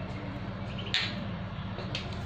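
A single sharp click about halfway through, as a metal whisk knocks against a plastic mixing bowl of flour when it is taken up, over a steady low hum.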